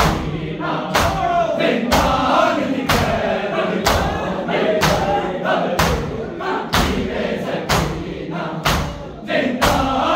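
Group matam: bare-chested men striking their chests with open hands in unison, a sharp slap about once a second. Men's voices chant a noha lament over the beat.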